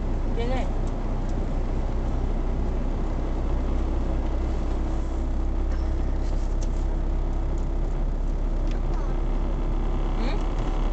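Steady low rumble of engine and tyre noise heard from inside a car driving at moderate road speed.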